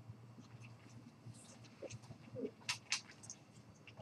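Quiet room with a faint hum and a few soft clicks, two of them close together about three seconds in: computer mouse clicks.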